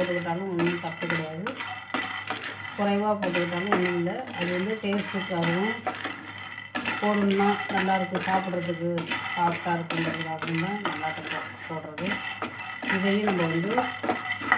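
Wooden spatula stirring and scraping raw peanuts around a non-stick frying pan, with the nuts clicking and rattling against the pan as they dry-roast. A person's voice is heard in stretches underneath.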